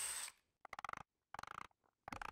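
DeWalt cordless drill boring into a walnut board, its running noise cutting off about a quarter second in. Then two brief, faint bursts of rapid ticking, one near the middle and one a little later.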